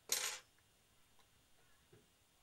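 A brief, faint scrape or rustle of about a third of a second from handling small card parts of a paper model at the bench, followed by a few faint ticks.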